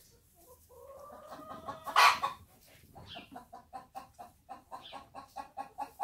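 Chickens clucking: a drawn-out call, a loud squawk about two seconds in, then a steady run of quick clucks, about five a second.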